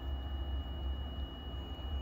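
Steady low rumble and a thin, steady high whine from a powered-up VRF air-conditioning outdoor unit running in test mode.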